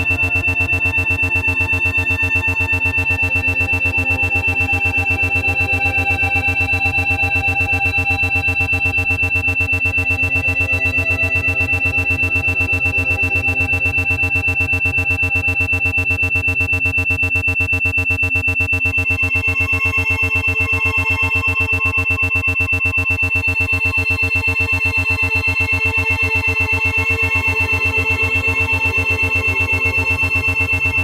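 Ambient synthesizer music with a steady high-pitched tone over it, all pulsing rapidly and evenly: an 8 Hz isochronic and monaural brainwave-entrainment tone. The soft synth chords shift about two-thirds of the way through.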